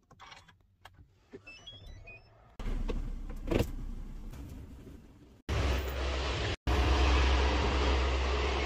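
Hyundai Creta being started from its push button, heard inside the cabin: a short run of electronic chime notes, then the engine catches about two and a half seconds in and idles steadily, with a click a second later. After an abrupt cut the running car is much louder, with a heavy low rumble.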